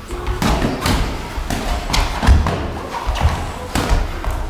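Boxing sparring: irregular thuds of gloved punches landing, mixed with the boxers' feet on the ring canvas, about seven knocks in four seconds.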